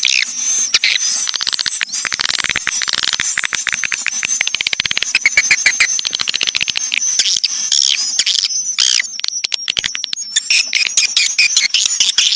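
Swiftlet lure-call recording (SP walet): dense, high chirping twitters of swiftlets, played on a loop to draw swiftlets into a swiftlet house to roost and nest. Rapid runs of clicks come in twice, about two seconds in and again about eight seconds in.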